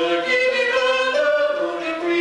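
Slow early-music duet: a lute being plucked under long held notes from a small pear-shaped bowed fiddle, several notes sounding together.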